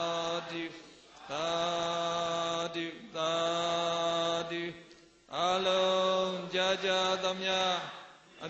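A man chanting the Burmese Buddhist sharing-of-merit call "amya" in long, drawn-out held notes. There are four phrases with short breaths between, and the last, longest one wavers in pitch.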